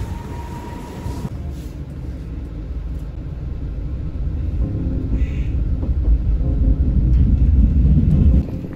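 A train running, with a low rumble that grows steadily louder and peaks near the end. A brief steady tone sounds during the first second.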